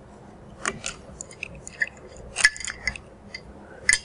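A screwdriver working the screws of metal hose clamps on the extractor's tubes to loosen them: scattered small metallic clicks and ticks, the loudest about two and a half seconds in and again near the end.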